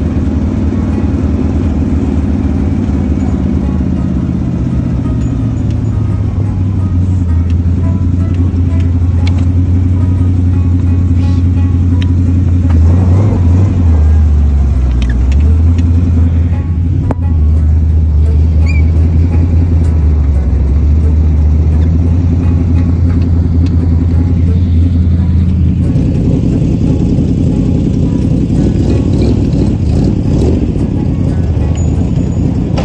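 Rat rod's engine running while the car drives through snow. Its low note slides down over the first few seconds, then holds fairly steady, with small rises and dips about halfway through and a change near the end.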